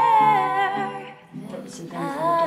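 Music from an original song: a wordless vocal line hummed over accompaniment, with a held, wavering note in the first second and a new phrase starting near the end.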